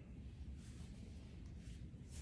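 Quiet room tone: a low steady hum with a few faint, brief soft brushing sounds from the two people moving.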